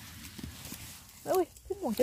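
Faint outdoor ambience, then in the last part a person's voice, a few wavering, drawn-out vocal sounds that grow louder toward the end.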